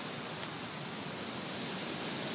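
Steady outdoor wind, an even hiss with no distinct events.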